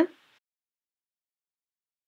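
Near silence: the soundtrack is blank, with only the tail of a woman's spoken word at the very start.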